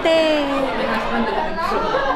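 A woman's drawn-out vocal exclamation that falls in pitch, then overlapping chatter of people in a large hall.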